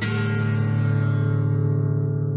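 A guitar chord struck once and left ringing, its low strings sustaining while the higher overtones fade. It is played to imitate the twanging, struck-piano-string ring of the seismic-charge sound effect.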